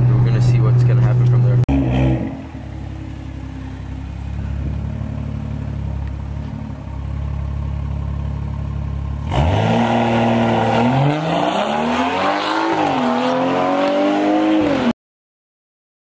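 A steady low engine-and-road drone heard inside a moving car, then after a cut a quieter low rumble. About nine seconds in, a BMW F30 sedan's engine revs up as the car pulls away, its pitch rising, dipping and rising again, until the sound cuts off abruptly near the end.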